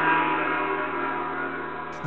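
A long ringing tone with many overtones from the title sting, slowly fading and cut off at the end as talk begins.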